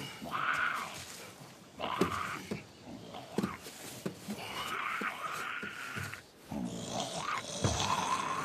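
A zombie's raspy growling and snarling in repeated rough bursts, with scattered short knocks.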